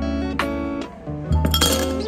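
Ice cubes dropping from a silicone tray and clinking into a glass cup, with the clatter strongest about one and a half seconds in. Background acoustic guitar music plays throughout.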